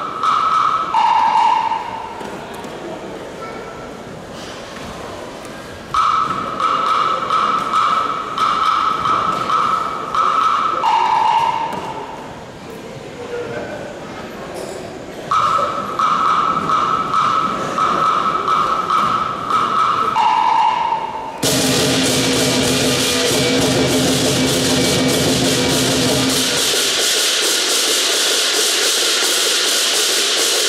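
Lion dance percussion: for the first two-thirds, sparse strikes under a ringing tone that holds for about five seconds and then drops a step in pitch, three times over. About two-thirds through, the full drum, gong and cymbal ensemble comes in suddenly and plays loudly and steadily.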